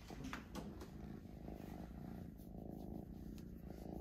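Cat purring steadily, with a couple of soft rustles in the first second.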